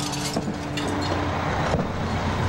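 Steady outdoor noise with a low rumble and hiss, with a faint steady hum through the first second.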